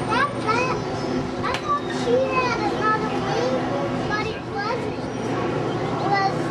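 Children's voices chattering and calling, high-pitched and overlapping, over a steady background hum.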